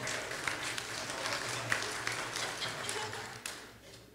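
Congregation applauding in a large room, many scattered claps with some murmured voices, dying away near the end.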